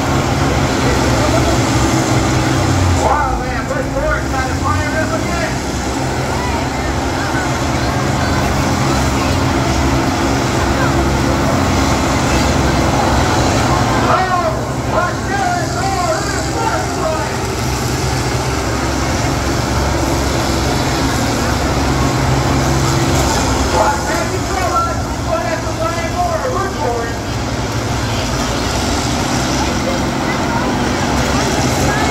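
Diesel engines of several large combine harvesters running steadily together.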